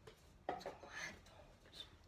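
Faint, low speech murmur, starting about half a second in.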